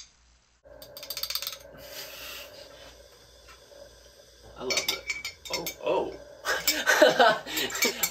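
Small hard objects handled, rubbed and clinked close to a sensitive microphone, making rasping scrapes and clinks recorded as sound samples; the clatter gets louder about halfway through, with voices near the end.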